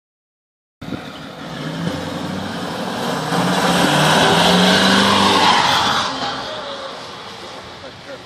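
Ford 6.4 Powerstroke twin-turbo V8 diesel, with relocated exhaust and an aftermarket tune, pulling past. The sound starts about a second in, rises slightly in pitch and grows loudest midway, then fades as the truck moves away.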